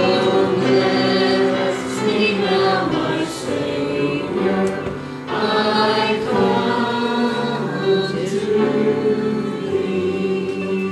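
A hymn sung by a church congregation, many voices together on long held notes.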